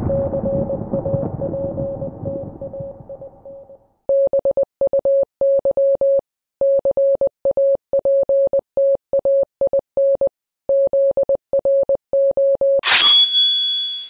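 A steady electronic signal tone with a rumble under it that fades out over the first four seconds. The same tone then turns into short and long beeps, Morse-code style, for about nine seconds, as a radio-transmission sound effect. Near the end a brief, louder and brighter electronic sound with a high tone follows.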